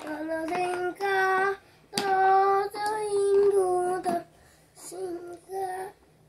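A young boy singing, a run of held notes with short breaks between phrases.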